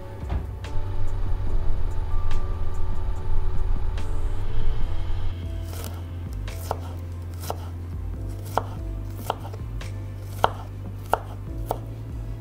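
A kitchen knife chopping garlic on a wooden cutting board: sharp, irregular knocks roughly once a second, starting about halfway through. Before that, steady background music is the main sound.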